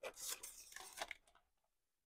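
A plastic DVD case sliding out from between tightly packed cases on a shelf: a faint scraping rub for about a second, with a small click near the end.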